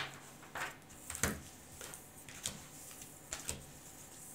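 Tarot cards being gathered up and squared into a pile on a tabletop by hand: a series of about six short taps and slides, spaced roughly half a second apart.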